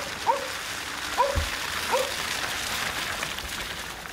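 SEAT Leon hatchback rolling slowly over a wet, slushy lane: a steady hiss of tyres through slush, with a low thump about a second and a half in. Three short rising chirps sound in the first two seconds.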